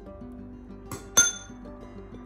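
A spoon clinks once against a ceramic bowl, sharp and ringing briefly, with a lighter tick just before it, over background music.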